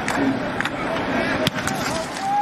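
Football broadcast field audio during a punt: steady stadium crowd noise with players' voices, and one sharp thud about one and a half seconds in, the punter's foot striking the ball.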